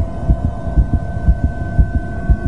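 Fast heartbeat, thumping about twice a second, over a steady droning hum.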